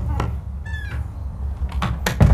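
Steady low outdoor rumble with one short, high-pitched call, bending slightly, a little under a second in, and a few faint clicks near the end.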